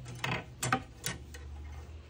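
Clothes hangers clicking and scraping along a wardrobe rail as a dress on its hanger is pulled out, with a few sharp clicks in the first second.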